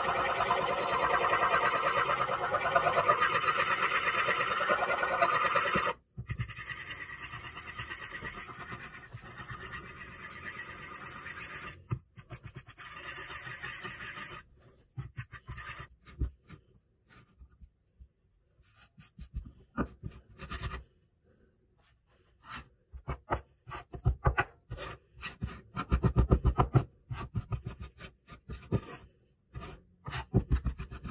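A fork beating egg yolks in a well of flour on a countertop, a dense run of quick scraping strokes that is loudest for the first six seconds and softer until about fourteen seconds in. After that a metal bench scraper cuts and scrapes the shaggy pasta dough against the counter in scattered taps and scrapes, which come thicker and louder near the end.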